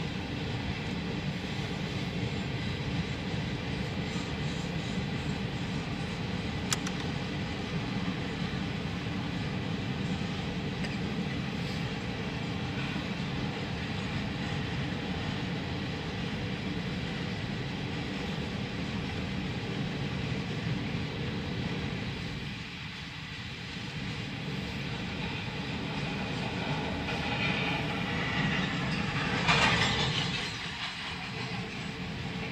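Freight train cars rolling past a grade crossing: a steady rumble and clatter of steel wheels on the rails. It dips briefly about two-thirds of the way through, then grows louder and brighter near the end.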